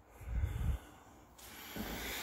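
A short breath puffing on the handheld camera's microphone, a low rumble lasting about half a second, followed by a faint hiss.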